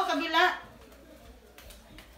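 A child's high voice trailing off in a short wavering sound in the first half second, then quiet room tone.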